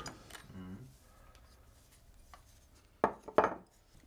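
Small cast bronze axe pieces knocking on each other and on a wooden workbench: two or three sharp clacks about three seconds in.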